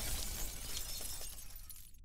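Sound effect of stone shattering, with small fragments clicking and clattering as the sound dies away. The high end cuts off suddenly at the end.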